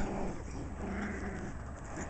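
Five-week-old Shiba Inu puppies vocalizing: a brief sound at the start, then a longer, drawn-out one from about half a second in. Low rumble underneath.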